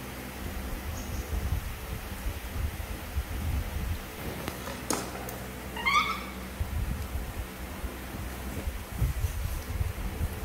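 A young macaque gives one short, squeaky, meow-like call about six seconds in, over low, uneven thumps and rustling from handling and eating.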